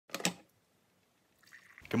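A brief clink and clatter of a coffee carafe being taken from a drip coffee maker.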